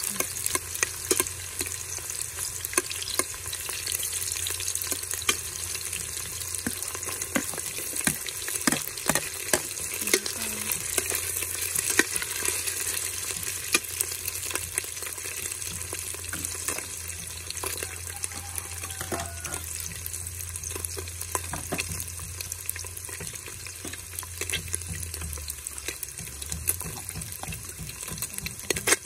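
Garlic and red onion sautéing in oil in a stainless steel stockpot, giving a steady sizzle. A metal spoon stirs them, clicking and scraping against the sides and bottom of the pot.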